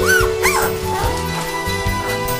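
Three-week-old Labrador puppies whimpering: two short high squeals that rise and fall within the first second, over background music.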